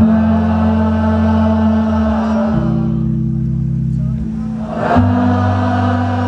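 A crowd singing a held, wordless line together over a live band's steady low bass notes. The bass changes note about midway and again near the end, and the singing thins out in the middle and swells back near the end.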